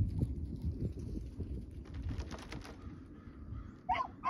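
A dog's paws knocking on a metal agility dog walk as it runs along it, in a few short clusters of knocks over a low rumble.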